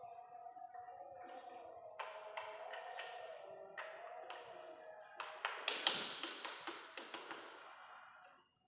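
Sharp metal taps and clicks from a hand tool working on an engine block: a few spaced taps, then a quicker, louder run of them about five to seven seconds in.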